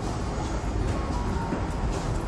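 Subway train running, a steady loud rumble with a few faint short high squeals.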